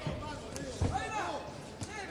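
Voices shouting in a boxing arena, with dull thuds from the ring as the two boxers exchange; the strongest thud comes just under a second in.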